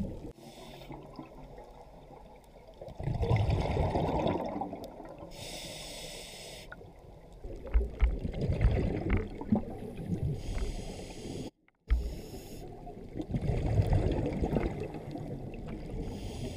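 Scuba diver breathing through a regulator underwater. There are three long exhalations of bubbles about five seconds apart, with a higher hiss of inhalation between them. The sound cuts out briefly about two-thirds of the way through.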